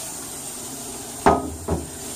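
Two hard knocks about half a second apart, the first the louder, over a steady hiss.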